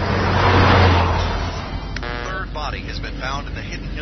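A car passing by at speed: a rush of road and engine noise with a low hum that swells to its loudest about a second in, then fades. In the second half a voice starts talking.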